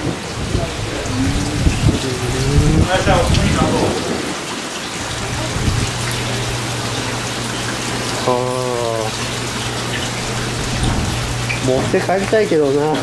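Steady hiss of splashing and bubbling water from aerated live-fish tanks, with a few brief voices. A low steady hum starts about five seconds in.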